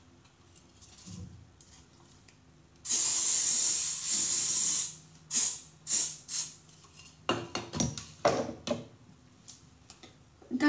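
Aerosol hairspray can spraying onto hair: one long spray of about two seconds, then several short puffs.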